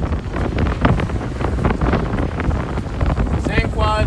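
Wind buffeting the camera microphone, a constant low rumble with irregular crackles; a man's voice starts near the end.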